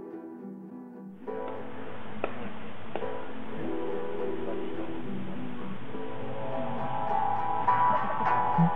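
Guitar music with plucked notes. About a second in, a steady hiss joins it.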